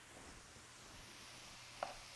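Near silence: faint room tone, with one soft click near the end.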